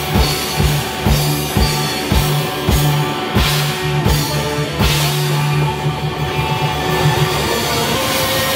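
Live hard-rock band playing: a steady kick-drum beat with bass and guitar. The kick drum stops about five seconds in, leaving held bass and guitar notes.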